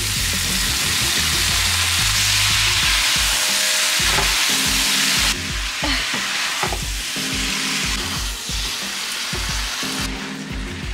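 Razor clam pieces hitting a hot oiled pan on high heat and sizzling loudly, then being turned over with a spatula. The sizzle drops off suddenly about five seconds in and carries on more quietly.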